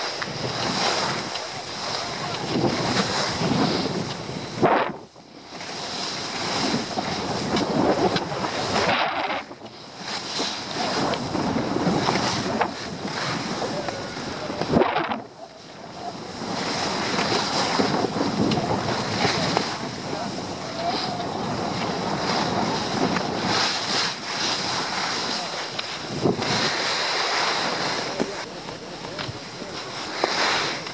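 Skis sliding and scraping over groomed snow on a downhill run, with wind buffeting the microphone. The noise rises and falls, with brief lulls about five, nine and fifteen seconds in.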